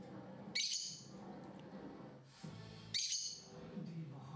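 Rosy-faced lovebird giving two short, shrill, high calls about two and a half seconds apart.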